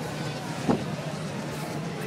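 Outdoor street background: a steady low hum with faint voices, broken by one brief sharp sound less than a second in.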